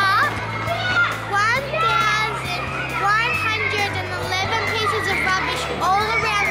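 A young girl singing, her voice sliding and wavering in pitch, over a backing track whose low bass chord changes about every two seconds.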